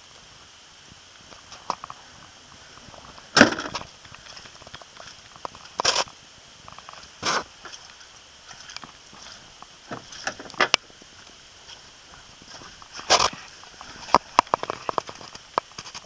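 Irregular knocks and clunks as someone moves around and handles a parked car, with the loudest knock about three and a half seconds in and a cluster of smaller clicks near the end.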